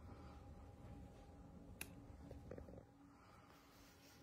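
Near silence: faint room tone with a low hum and a thin steady tone, broken by one sharp click a little before halfway and a few soft ticks just after.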